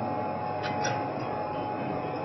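Steady background hiss and hum, with two faint quick clicks a little over half a second in as a handheld smart key is pushed into an equipment lock cylinder.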